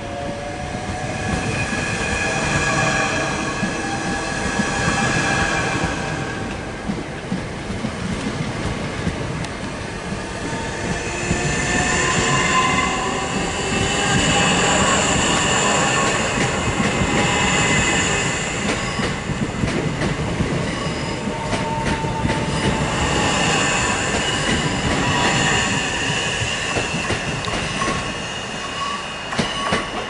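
Southeastern electric multiple unit running out along the platform: a rising motor whine at first, then high-pitched wheel squeal in two spells over a steady rumble and clatter from the wheels on the track.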